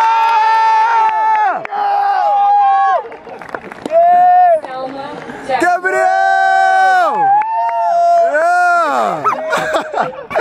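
Young men's voices shouting loud, drawn-out cheers, about six long held yells one after another, each dropping in pitch as it trails off, with several voices overlapping at times.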